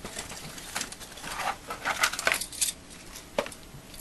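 Cardboard box being opened by hand and the stock CPU cooler pulled out: irregular rustling and scraping of the cardboard packaging, with a few light clicks and knocks.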